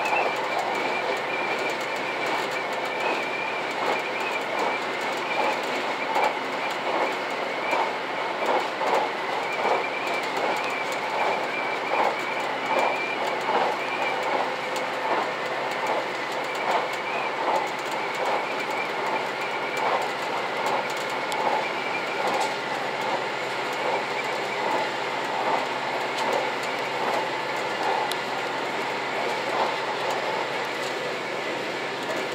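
JR Shikoku 2000-series diesel express train running, heard from inside the car: a steady running noise with a regular clickety-clack of the wheels over rail joints, about one to two a second, and a thin wavering squeal from the wheels on the curve.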